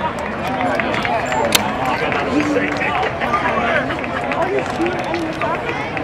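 Spectators' chatter: several people talking and laughing close by, with crowd murmur behind. A single sharp click about one and a half seconds in.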